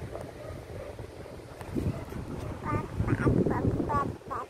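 Baby babbling: a run of short, high-pitched squeaky calls in the second half, over the rustle and rumble of the phone being handled close against the bedding.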